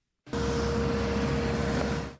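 Steady outdoor noise of running vehicle engines with a low rumble and one held droning tone, starting abruptly a moment in after a short silence.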